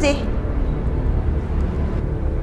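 A woman's sharp spoken exclamation right at the start, then a steady low rumbling drone of background music that carries on without break.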